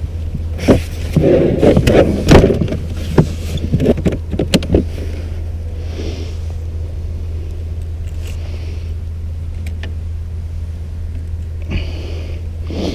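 A hard-plastic rod case being opened and handled, with a run of plastic clicks and knocks over the first few seconds. After that it turns to quieter handling with a few faint ticks.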